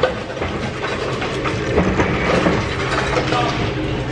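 Steady low rumble of busy restaurant background noise, with faint scattered clatter.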